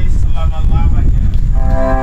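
Wind buffeting an outdoor microphone under a short spoken phrase, then about a second and a half in a held keyboard chord starts, steady and sustained.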